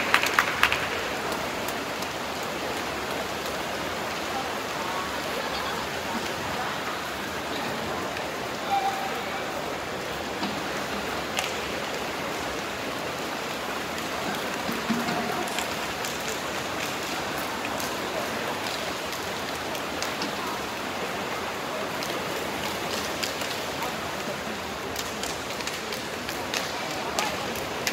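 Steady, even wash of indoor swimming-pool noise: water splashing from swimmers racing breaststroke, echoing in a large pool hall. A couple of brief faint voices call out along the way.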